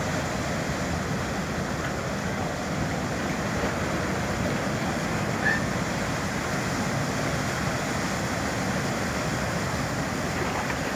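High-speed ferry berthing: a steady rumble of its engines mixed with the rush of its propeller wash churning the water against the quay, with wind on the microphone. A brief high chirp about five and a half seconds in.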